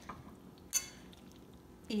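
A single light metallic clink with a brief ring, just under a second in, as a metal saucepan knocks against the rim of a stainless steel pot while cheese sauce is poured onto macaroni.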